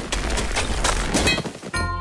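Cartoon sound effects of a pickaxe hacking through ice: a quick run of knocks and crunches over the music score. Near the end the knocks give way to a held music chord.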